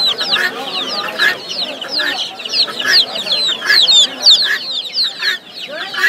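A cage of chicks peeping all at once: many short, high cheeps that slide downward in pitch and overlap in a constant stream.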